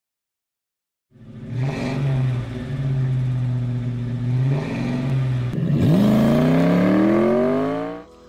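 Car engine sound effect: it starts about a second in, runs at a steady low pitch, then about six seconds in dips and revs up in a long, steadily rising climb until it cuts off.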